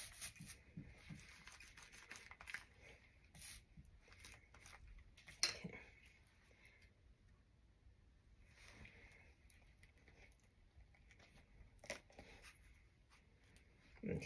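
Near silence with faint rustles and light taps of hands handling the inked cut base of a romaine lettuce head and pressing it onto fabric to print it. A slightly louder tap comes about five and a half seconds in and another near twelve seconds.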